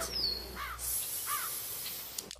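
A short falling whistle-like note, then two brief bird-like chirps about 0.7 s apart, faint under a light hiss.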